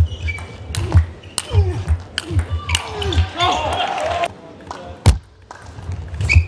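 Table tennis ball clicking at irregular intervals as it is struck by rackets and bounces on the table and floor, with one sharp, louder click about five seconds in after a brief lull.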